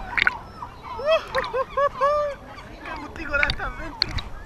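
Several gulls calling: a run of five short, arching calls about a second in, the last one drawn out, with other gulls calling around them.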